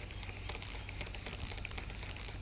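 Spinning reel being cranked, bringing in line with faint, light ticking, the line cut by a gar that has bitten off the shaky-head jig.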